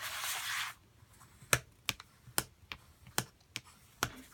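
A bone folder rubbed along cardstock to crease and reinforce paper hinges: a short scraping rub, then a run of light, sharp clicks about two a second.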